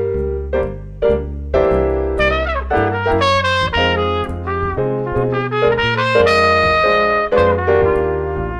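Trumpet playing a flowing jazz melody line, accompanied by piano chords and a bass line that steps from note to note.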